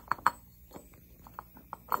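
Metal hub of a trigger-wheel kit clicking and clinking lightly against the crankshaft damper as it is worked on over the alignment set screws: a handful of short, sharp clinks spread through the two seconds.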